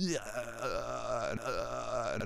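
A man's voice making low, wordless vocal sounds, drawn out and wavering in pitch.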